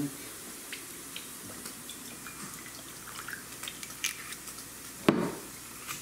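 Faint, sparse clicks and taps of glass bottles and dishes being handled on a kitchen counter, with one louder knock about five seconds in.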